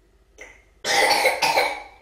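A woman coughing: two coughs close together, about a second in, after a short intake of breath.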